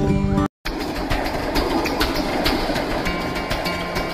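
Background music that drops out completely for a moment about half a second in, then resumes with a busier, noisier sound.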